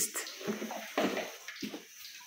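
Wooden spatula stirring thick, wet blended-bean batter for moi moi in a pot, in a few separate strokes.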